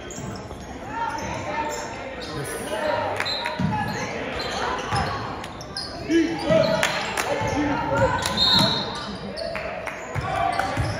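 Crowd voices and shouts echoing around a gymnasium during a basketball game, with a basketball bouncing on the hardwood court in several irregular thumps.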